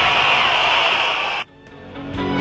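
Live band music from a concert recording, cut off abruptly about one and a half seconds in. After a brief quiet gap, the music starts again near the end.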